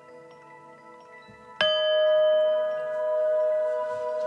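A singing bowl struck once about a second and a half in, then ringing on with a steady tone whose loudness slowly swells and fades. Before the strike, soft chime-like music plays quietly.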